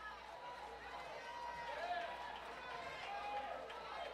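Faint voices of a congregation praising aloud, several people calling out and holding notes at once, heard distantly in the hall.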